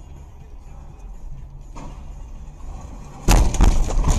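Steady low rumble of a car on the move, heard from inside the cabin. About three seconds in comes a sudden loud run of crunching knocks and bangs as the car leaves the road and ploughs into the roadside snow.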